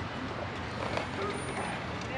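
Steady outdoor background of a busy seaside parking lot: a general hum of distant traffic.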